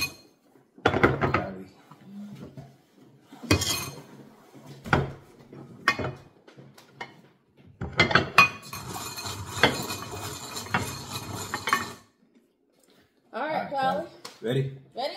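Mike and Ike candies poured off paper plates into a glass bowl, clattering against the glass in several short bursts, then a longer run of rattling as a hand mixes them in the bowl, stopping abruptly.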